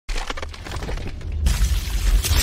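Crumbling-stone sound effect for an animated logo intro: a rapid scatter of cracks and debris clatter over a low rumble, swelling into a heavier crash about one and a half seconds in.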